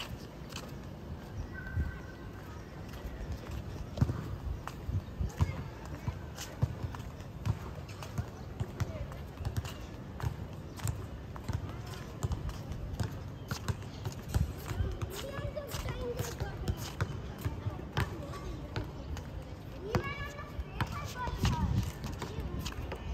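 A basketball bouncing on an outdoor court, giving irregular thuds, mixed with footsteps on the paved path. Faint voices can be heard in the background.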